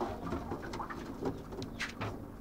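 Domestic pigeons cooing, with a few faint clicks near the end.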